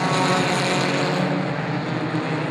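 A pack of Pure 4 four-cylinder stock cars racing together, several engines running at high revs at once in a steady, layered sound.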